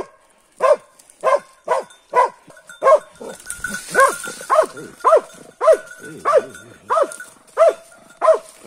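Dog barking steadily and insistently, about two barks a second, baying at the wild boar it has tracked down.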